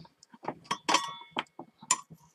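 A string of light clicks and taps from handling and turning over a circuit board with components fitted, one knock about a second in leaving a brief ringing tone.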